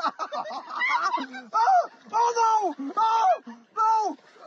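A person yelling in distress: a rapid run of short vocal cries, then about four loud, long, drawn-out shouts from about a second and a half in.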